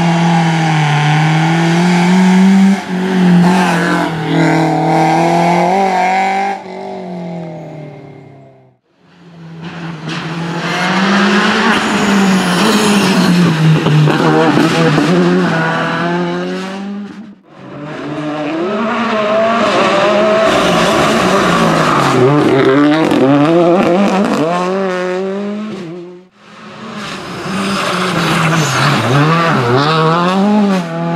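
Rally cars driven hard through bends, engines revving up and dropping in pitch with gear changes and lifts, in four separate passes split by cuts. The first pass is a BMW 318 rally car, and the later passes include Skoda Fabia R5s with their turbocharged four-cylinder engines.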